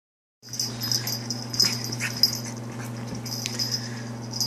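A puppy playing with plush toys, making small dog sounds as it mouths and tugs them. A steady low hum runs underneath. The sound begins about half a second in.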